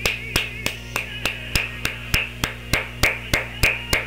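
A person snapping their fingers in a steady rhythm, about three snaps a second.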